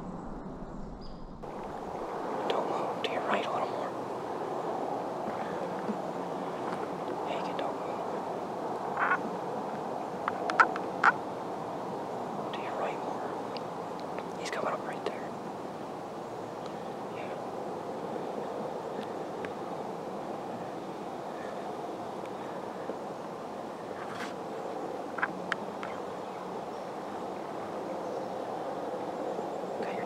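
Hushed outdoor scene: a steady background hiss with scattered short rustles and clicks, and faint hushed voices.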